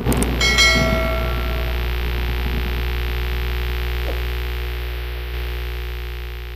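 Channel-intro sound effect: a short, bright, bell-like ringing hit near the start, then a deep, steady, humming drone that slowly fades away.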